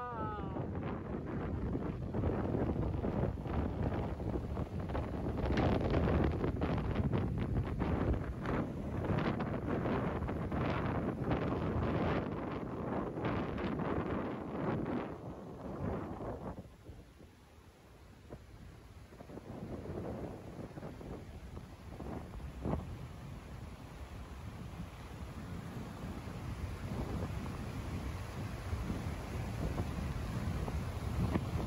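Wind buffeting the microphone, strong and gusty for the first half, dropping away sharply about 17 seconds in, then picking up again more lightly.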